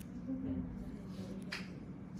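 Faint, muffled talk in the background, too indistinct to make out words, with one sharp click about one and a half seconds in.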